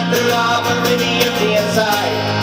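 Live acoustic rock music: acoustic guitar strummed in a steady rhythm over held bass notes.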